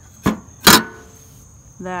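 Hinged sheet-metal engine-room access door on a vintage Mitsubishi Silver Pigeon scooter being swung shut: a light knock about a quarter second in, then a louder metal clank with a brief ring as it closes.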